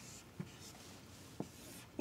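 Marker pen drawing arrows on a blackboard: faint scratching strokes with a few light taps of the tip on the board.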